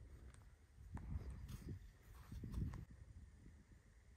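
Quiet outdoor background with faint, uneven low rumbles of wind on the microphone, strongest about a second in and again past the middle, with a few faint clicks.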